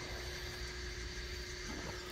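Steady room hum, likely ventilation, with a faint constant tone running through it; a faint rustle near the end as the phone is handled.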